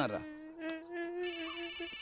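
A man holding one long nasal sung "nah" on a steady pitch, a buzzing hum that breaks off just before the end.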